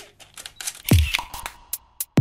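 Camera shutter click sound effects, then a deep electronic kick drum about a second in, opening a short intro jingle.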